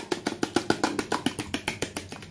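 Fork beating an egg wash in a plastic container: quick, even clicks of about nine a second as the fork strikes the container's side.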